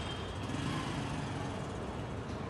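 Steady outdoor urban background noise, a continuous hum of road traffic.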